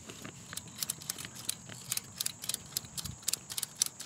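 A ratchet strap being cranked tight by hand: the ratchet clicks quickly and unevenly, about five clicks a second, as it draws the portable garage's fabric cover taut around the frame.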